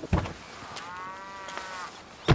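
A short thump, then a cow mooing once for about a second.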